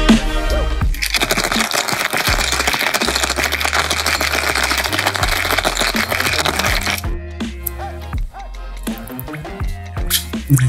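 Ice rattling fast in a metal cocktail shaker as the drink is shaken hard, for about six seconds before it stops. Background music with a beat plays underneath.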